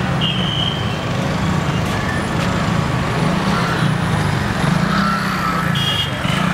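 Steady road traffic: motor vehicle engines running nearby, a low engine drone that swells and eases.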